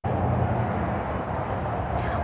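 Steady outdoor street ambience picked up by a live field microphone: a low traffic rumble with a faint hiss above it.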